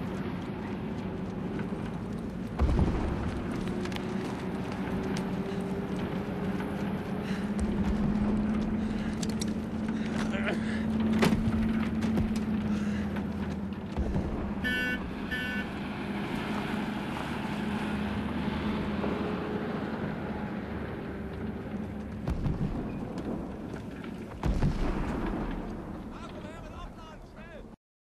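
A truck engine running steadily, with a few loud bangs of gunfire over it: one about three seconds in, one near the middle, and two close together near the end.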